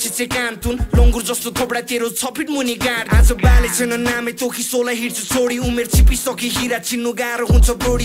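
Nepali-language rap track: a rapped vocal over a steady synth line, with deep bass hits every second or two.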